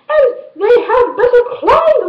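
A person speaking in a very high, squeaky voice, with the pitch sliding up and down from word to word.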